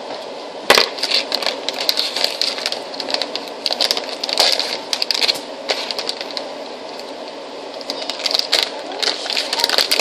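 Plastic packaging crinkling and crackling as it is handled close to the microphone, in two spells, with a sharp knock about a second in.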